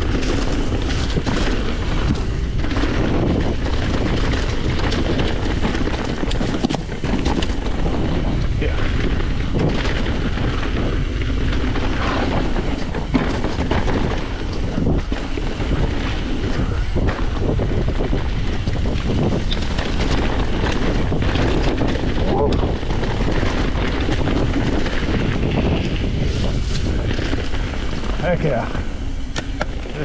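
Full-suspension mountain bike descending a dirt singletrack: a steady rush of wind on the microphone over tyres rolling through dirt and dry leaves, with the bike clattering and knocking over bumps throughout.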